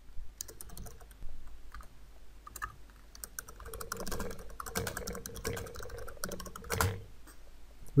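Computer keyboard being typed on: a run of quick, uneven keystrokes, with one louder key press near the end.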